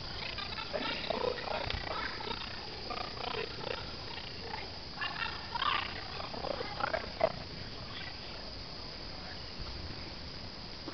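A burning car: the fire crackling and hissing with irregular short squeals, and a few sharp pops, the loudest about seven seconds in.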